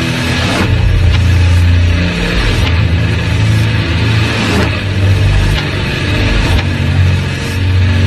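Doom/sludge metal: heavily distorted guitar and bass holding low, sustained notes at a slow tempo, with a drum and cymbal hit about once a second.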